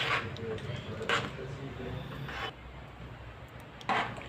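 A spoon stirring thick lentil stew in a pot, scraping along the pan with a couple of short strokes in the first second or so, then going quieter after about two and a half seconds.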